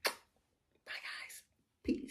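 A single lip-smack of a blown kiss, then soft breathy whispering twice, about a second in and near the end.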